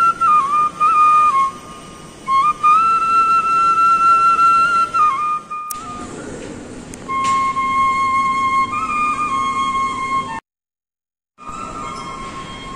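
Bansuri (bamboo flute) played live: a slow melody of long held notes that step up and down in pitch. The sound drops out for about a second near the end.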